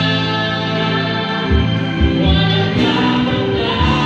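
A man and a woman singing a Filipino worship song together into microphones over instrumental accompaniment, with steady held notes.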